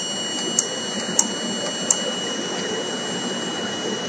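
Three light clicks about two-thirds of a second apart: keys being pressed on the front panel of a vibratory stress relief controller while its speed is set. Under them runs a steady hiss with faint high steady tones.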